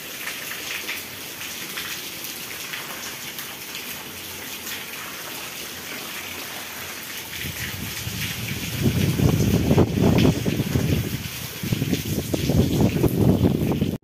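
Heavy rain falling on a corrugated sheet roof and a waterlogged yard: a steady, even hiss. Just past halfway, gusts of wind start buffeting the microphone with a loud, fluctuating low rumble over the rain.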